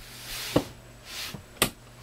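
Hand handling noise: soft rustling and two sharp clicks, about half a second and a second and a half in, as the clock's AC power is cut for a battery-backup test.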